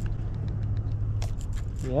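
A steady low engine-like hum, with scattered light clicks and knocks from handling a spinning rod and reel.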